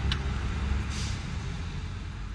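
A steady low rumble of background noise, with a short click just after the start and a brief hiss about a second in, slowly getting quieter.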